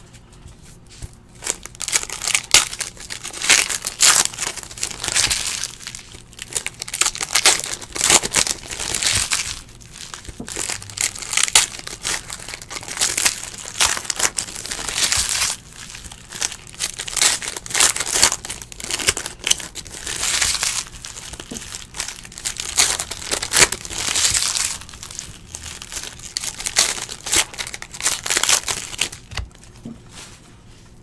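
Foil wrappers of Optic basketball card packs crinkling and tearing as the packs are ripped open, in irregular bursts of crackly rustling every second or two, with cards shuffled between.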